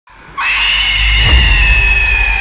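A long, high-pitched scream that starts about half a second in and is held steadily, over a deep low rumble, as horror-trailer sound design.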